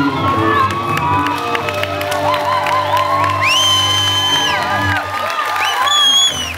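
A live band's closing bars, with sustained instrumental notes dying away about five seconds in, while a young audience cheers and whoops over it; one long high shout is held for about a second midway.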